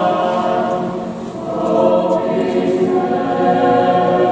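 Mixed choir singing a cappella, holding sustained chords that ease off about a second in and swell again into a new phrase just before the two-second mark.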